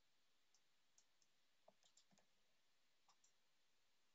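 Near silence with faint, scattered computer mouse clicks, a small cluster of them about two seconds in.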